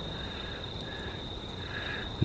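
A steady, high, thin trill of insects such as crickets, with a few short soft chirps.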